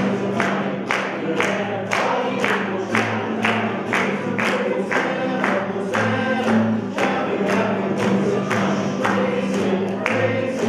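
A group of people singing a worship song to a strummed acoustic guitar, with steady hand claps on the beat about twice a second.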